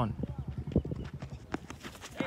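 A rapid, irregular run of light clicks and knocks, under a faint murmur of voices.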